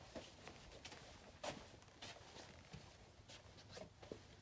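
Faint, irregular footsteps and soft knocks of a person walking in sandals, barely above near silence.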